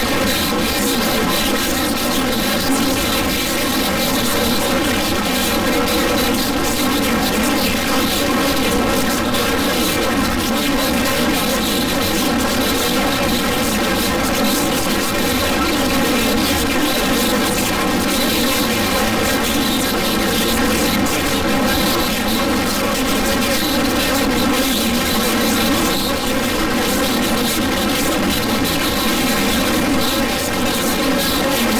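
A loud, steady buzzing drone that holds one unchanging pitch with many overtones and does not vary.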